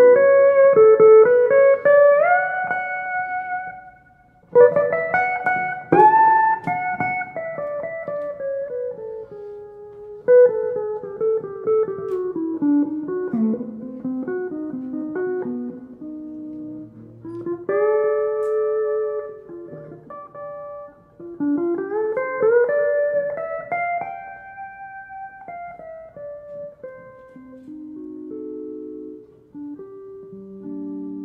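Solo guitar playing a slow melody in phrases, several notes sliding or bending upward in pitch, with a brief pause about four seconds in.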